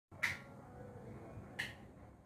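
Two short, sharp clicks about a second and a half apart, over a faint background hiss.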